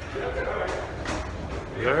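Faint voices over a low steady rumble, then a man starts speaking near the end.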